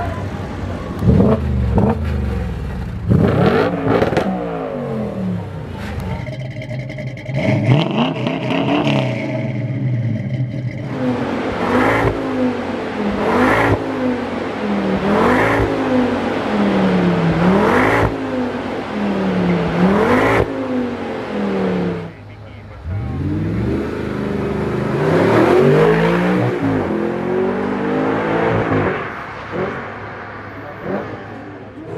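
Car engines revving in a run of short clips. In the middle, a Ford Focus's exhaust is blipped over and over, a rise and fall about every second and a half. Near the end a car accelerates hard with rising revs.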